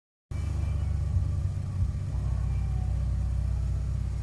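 Engine of a classic Mercedes-Benz W126 S-Class saloon idling with a steady low rumble, starting a moment in.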